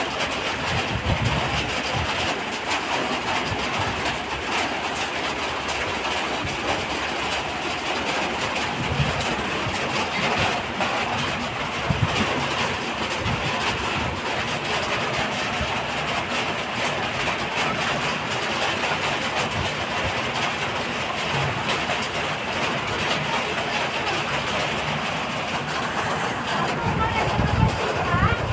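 A steady, loud rushing noise with irregular low bumps.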